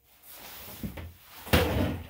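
A light knock a little before the one-second mark, then a louder thump with a short scuffing rumble about halfway through: handling knocks.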